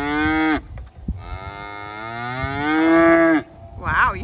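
A cow mooing. One long moo ends about half a second in, then a second, louder long moo rises a little in pitch and cuts off sharply near the end.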